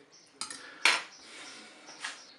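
Metal fork clinking against a small glass bowl: a light clink and then a sharper, louder one about half a second later, near the first second.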